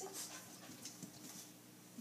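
Faint scuffles and a few soft knocks as schnauzers shift and sit down on rubber balance pods, over a low steady room hum; the last of a spoken command is heard at the start.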